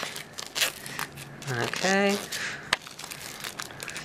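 Clear plastic shrink wrap being torn and peeled off a cardboard box, crinkling irregularly, with one sharp click a little past the middle.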